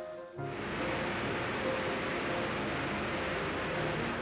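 Steady roar of a DC-3's engines and the airflow, heard inside the unpressurized cabin in flight. It cuts in suddenly about half a second in, under background music.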